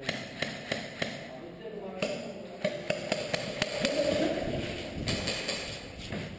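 Men's voices over a string of sharp clicks and knocks, several a second at times, during airsoft play.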